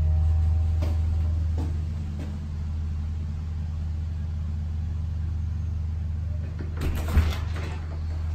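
A steady low mechanical hum, with a few light knocks on a front door and a louder cluster of knocks or thumps about seven seconds in. No dog barks in answer.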